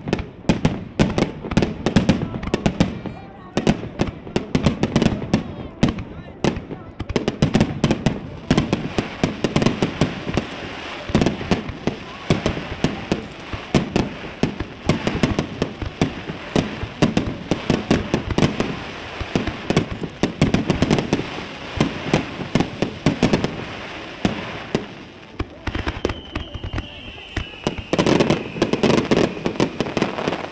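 Fireworks display: a dense, continuous barrage of aerial shell bursts, bang after bang with crackling between. Near the end a long whistle falls slowly in pitch over the bursts.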